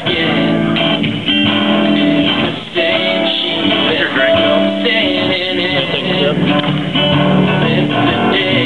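Acoustic guitar being strummed in a live song, with a singing voice over it.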